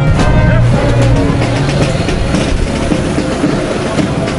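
Marching band: held brass notes for about the first half second, then mostly drumming with street noise underneath.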